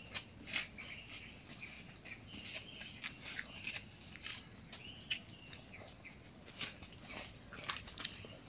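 A steady, high-pitched chorus of chirring insects, with scattered short rustles and snaps of leaves and stems as chili plants are handled during picking.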